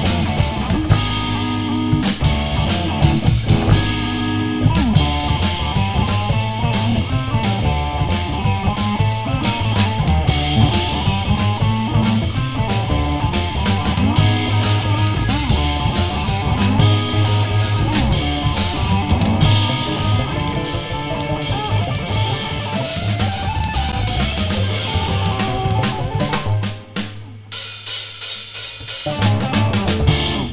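Loud, fully electric rockabilly band playing live, with electric guitar and drum kit driving. The music breaks off briefly about three-quarters of the way through, comes back for a few closing bars, and the song ends right at the end.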